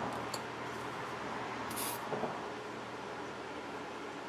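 A short hiss from an aerosol can about two seconds in, typical of a quick spray of silicone lubricant into paint for a pour, over a steady background hiss.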